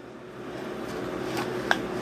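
Kitchen room noise with a steady low hum, and a few light clicks about one and a half seconds in.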